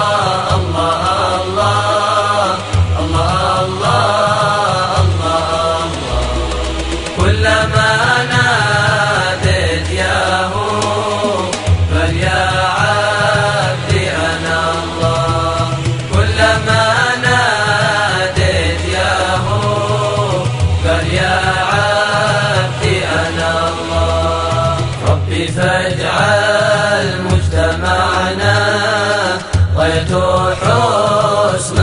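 Intro music: a melodic devotional vocal chant, an Islamic nasheed, sung in long wavering phrases over a low accompaniment.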